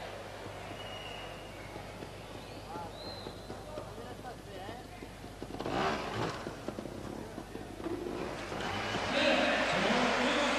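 A two-stroke trials motorcycle engine blipping in short bursts as the bike is ridden over obstacles, with one louder burst about six seconds in. This sits over the steady background noise of an indoor arena, and the level rises toward the end.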